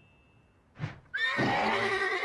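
A horse whinnying once, starting a little past a second in, after a short puff just before it.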